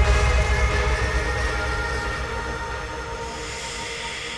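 Outro of a psytrance track: sustained synth chords over a low rumble with no kick drum, slowly fading.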